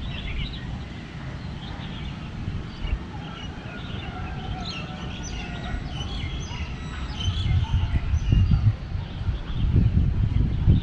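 Several small birds chirping and twittering, with short calls and a few brief held whistles scattered throughout, over a low rumble that grows louder in the last few seconds.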